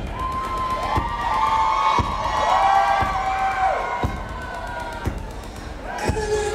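Opening of a live band song: sustained high notes swelling and fading over a low drum thump about once a second, with audience cheering.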